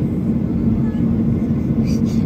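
Jet airliner cabin noise in flight: a steady low roar of the turbofan engines and airflow, with a steady hum, heard from a window seat beside the wing during the descent.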